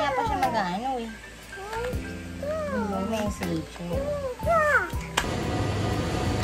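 A toddler's high-pitched wordless vocalizing, sliding up and down in pitch, over background music. About five seconds in it cuts abruptly to a steady, noisy shop ambience.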